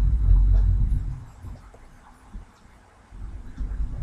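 A low rumble, loudest in the first second, fading away and then returning faintly near the end.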